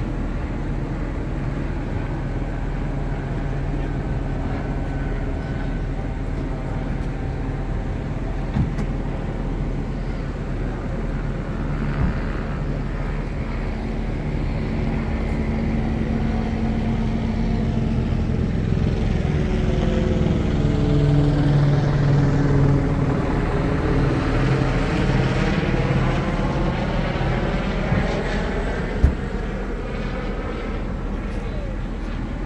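Police helicopter circling overhead: a steady rotor and engine drone that grows louder and takes on a swirling sweep in the second half as it passes nearer.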